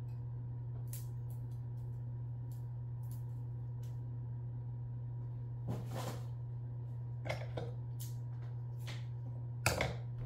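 A distant lawn mower drones as a steady low hum throughout. Scattered light clicks and rustles sound over it, the loudest cluster near the end.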